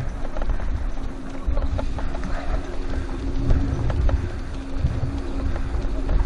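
Wheels rolling over a dirt road with wind rumble on the microphone and the light patter of two dogs' paws as they trot ahead in harness. A steady hum comes in about a second in and runs until near the end.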